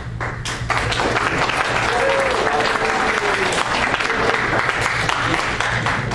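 Audience clapping, starting under a second in and thinning out near the end, with a faint voice underneath.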